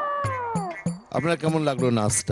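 A long, high-pitched cry that holds its pitch, then slides down and fades out just under a second in, much like a cat's meow; then a man speaking.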